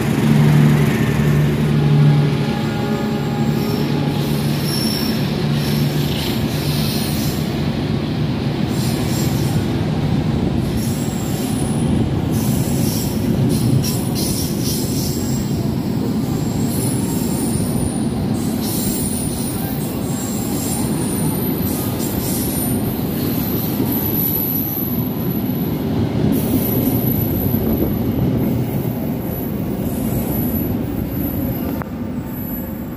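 Passenger train rolling through at speed: a steady rumble of wheels over the rails, with high-pitched wheel squeals coming and going through the later part. During the first few seconds, as the train's generator car passes, its diesel generator adds a steady low hum.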